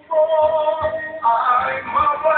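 A man singing into a handheld microphone, holding long notes; his voice comes back in just after a brief pause at the start.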